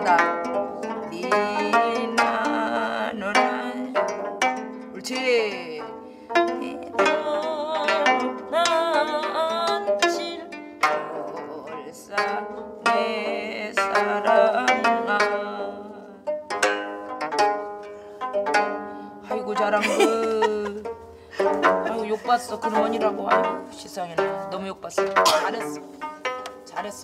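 Several gayageum, Korean twelve-string zithers, playing a melody together in plucked notes, some held notes bent and shaken in pitch. The playing comes in phrases a few seconds long, each with a brief drop in level between them.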